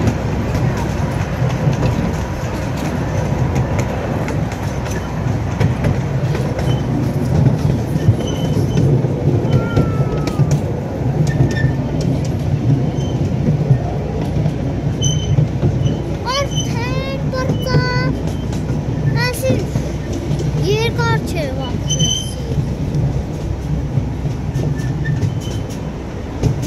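A moving vehicle's steady low rumble. About two-thirds of the way in, two short runs of quick high chirps sound over it.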